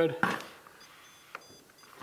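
Electronic stud finder giving a few faint, short, high-pitched beeps as it is worked over the drywall, marking where it senses a stud behind the wall. A single sharp click partway through.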